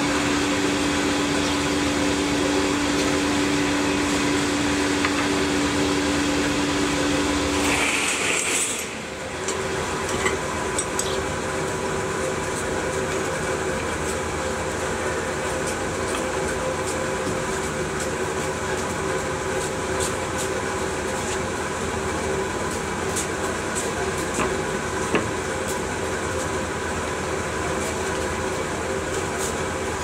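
Aluminium-melting pit furnace running with a steady, loud drone from its forced-air flame. The hum shifts at a cut about eight seconds in. Later come a few light metal clinks of tools against the crucible and furnace.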